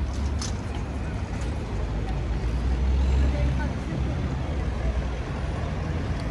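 Road traffic passing close by: a low vehicle rumble that swells about halfway through, over a crowd's faint chatter.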